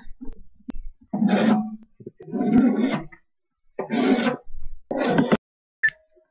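Chopped black olives being swept off a plastic cutting board into a bowl of salad and stirred in: four short scraping bursts with pauses between.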